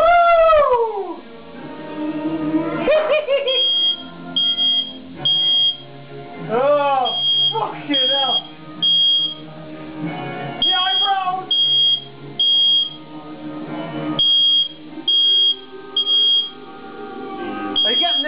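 Smoke alarm beeping in groups of three, set off by smoke from the fire, repeating every few seconds from a few seconds in. Under it runs music, with a voice or instrument gliding up and down several times.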